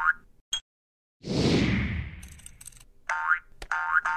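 Cartoon sound effects for an animated logo: a short blip, then a falling whoosh that fades over about a second and a half with a crackle at its tail, then two short pitched squeaks that rise in pitch near the end.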